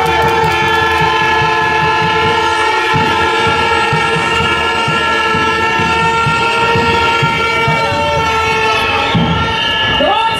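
A crowd blowing horns: several horn tones at different pitches are held together without a break, over a rough layer of crowd noise.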